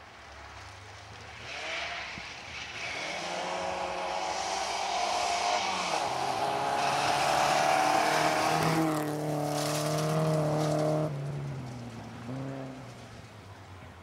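Volvo saloon rally car driven hard on gravel. Its engine note builds as it approaches, dips once, and is loudest as it passes close, over a hiss of tyres on loose gravel. The sound cuts off suddenly near the end.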